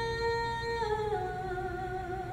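A solo female voice, unaccompanied, holding one long sung note and then stepping down to a lower held note about a second in, with a slight vibrato.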